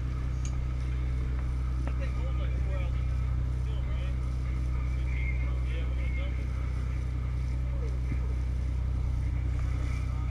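Sportfishing boat's engines running with a steady low drone while the boat holds position during a tuna fight.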